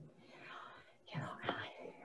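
Soft, quiet speech from a participant trailing off: a breathy, whisper-like sound, then a single softly spoken word about a second in.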